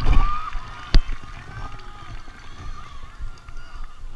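Movement noise from a body-worn camera on a marcher settling into a crouch on artificial turf: rustling and bumping, with one sharp knock about a second in. A brief voice sounds at the very start.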